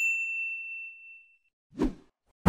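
Notification-bell 'ding' sound effect from a subscribe-button animation: a single bright chime that rings on and fades away over about a second and a half. It is followed near the end by a brief swoosh of a transition effect.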